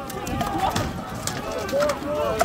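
Many voices shouting at once over an armored melee, with a few sharp knocks of rattan weapons striking shields and armour.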